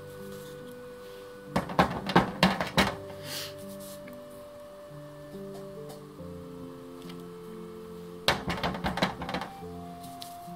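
Two bursts of quick clicks and knocks from a clear acrylic stamp block being set down, tapped and pressed onto paper, one a couple of seconds in and one near the end, over soft background music.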